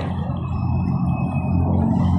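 A steady low engine hum, as of a motor vehicle running, with a few faint thin high tones over it.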